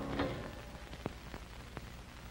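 The last chord of a harpsichord dying away, with a brief soft sound a moment in as the keys are released. After it comes a low steady hum with a few faint scattered clicks.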